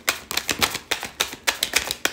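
A deck of tarot cards being shuffled by hand: a quick, irregular run of crisp card clicks and flaps.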